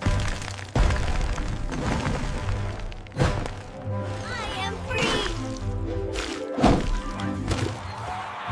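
Cartoon sound effects of a concrete slab cracking and breaking apart, with about three heavy thuds, over background music.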